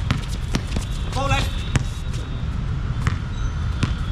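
Basketball being dribbled on an outdoor hard court: a run of sharp bounces, over a steady low rumble.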